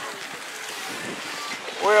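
Beach ambience: steady wind noise on the microphone over the gentle wash of shallow surf. A man's voice starts near the end.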